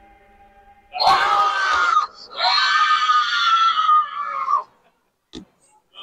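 A person screaming: two loud, very high-pitched screams, a short one about a second in and a longer, held one straight after.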